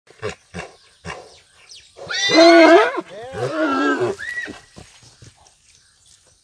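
A horse neighing loudly in two long calls, the second one wavering in pitch. Three short, sharp sounds come just before, in the first second.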